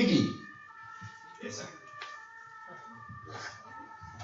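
A brief loud vocal cry falling in pitch right at the start, then soft sustained keyboard chords under faint scattered voices.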